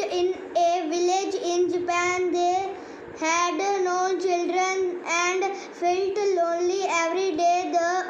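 A child reading a story aloud in a high, fairly level, sing-song voice, syllable by syllable, with short pauses.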